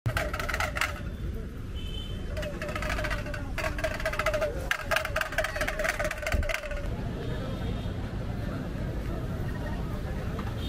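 Busy outdoor street ambience: people's voices and a rapid rattling or clicking during the first seven seconds, over a steady low rumble of traffic.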